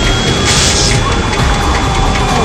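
Film score music over layered film sound effects, with a short hissing burst about half a second in and a thin steady high tone under it.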